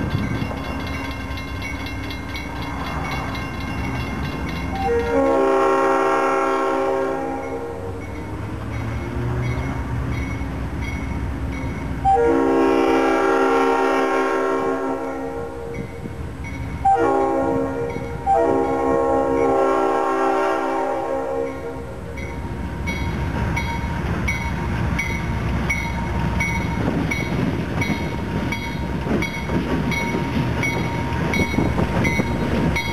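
GE C39-8 diesel locomotive blowing its air horn in the grade-crossing signal: long, long, short, long, a chord of several notes. A crossing bell rings throughout, and the locomotive's engine and wheels grow louder as it draws up and passes near the end.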